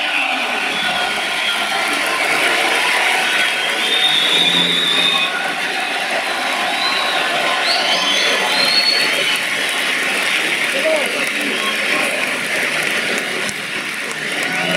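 Crowd in a hall shouting and cheering steadily, with a few high-pitched calls near the middle.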